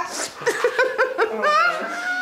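A young woman laughing in short, quick giggles, then holding one long high-pitched note of her voice near the end.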